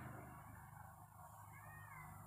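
Near silence: faint room tone, with one brief, faint call that rises and falls in pitch near the end.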